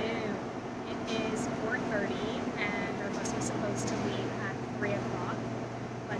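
A woman talking to the camera over a steady low mechanical hum, which grows stronger about three seconds in.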